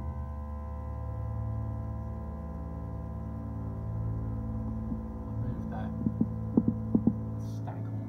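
Steady hum from reef aquarium equipment, with a regular low throbbing pulse under it. A few short sharp clicks come about six to seven seconds in.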